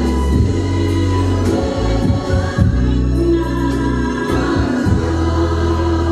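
Gospel music with a choir singing over deep, sustained bass.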